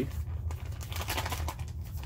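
Crinkling of a foil ration pouch of chili as it is handled and pulled at to open, over a steady low hum.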